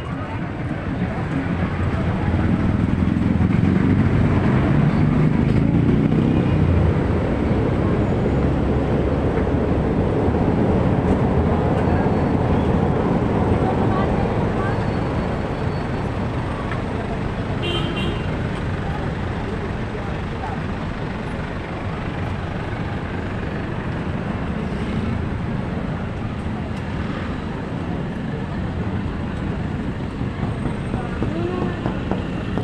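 Busy street ambience: car and motorcycle engines running and passing close by, with voices of people on the sidewalk. The low engine rumble is heaviest in the first half, and a short high beep sounds a little past halfway.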